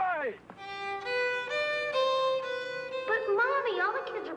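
A violin playing a few slow, held notes, with a voice briefly at the start and again near the end.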